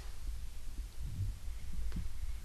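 Low, uneven rumbling hum, with one faint click near the end.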